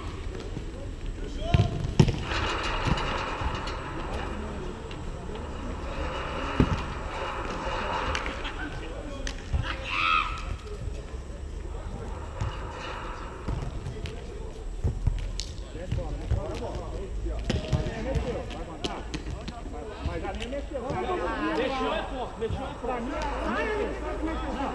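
Beach volleyball being struck by players' hands, a couple of sharp hits near the start and another a few seconds later, amid players' shouts and calls over a steady low rumble.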